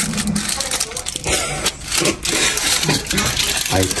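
Aluminium foil crinkling and rustling in irregular bursts as it is peeled open by hand, with a short laugh near the end.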